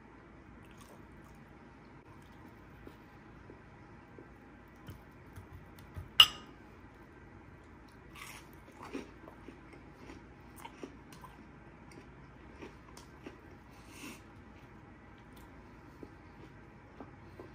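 Close-up eating sounds: chewing and biting into a crunchy Hot Cheeto-coated chicken strip. There is one sharp, loud crunch about six seconds in, then scattered softer crunches and mouth sounds through the second half.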